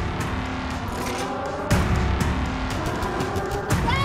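Dramatic trailer music with sustained tones and layered sound effects, including a sharp heavy hit a little under halfway through and rushing vehicle-like noise underneath. A woman's scream starts right at the end.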